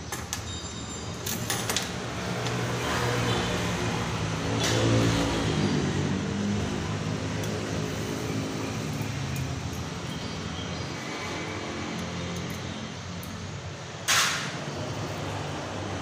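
An engine running steadily in the background, with a few sharp tool clicks in the first seconds and a brief loud hiss about fourteen seconds in.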